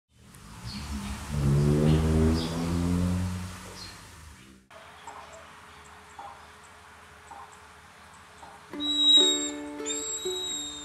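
A loud, low pitched drone with hiss for the first four and a half seconds, which then cuts off. Quiet ambience with faint bird chirps follows, and ukulele background music starts near the end.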